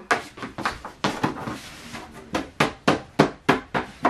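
A quick series of sharp taps or knocks, about five a second, with a break of about a second in the middle.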